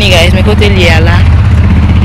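A loud, steady low rumble, with a voice talking briefly over it in the first second.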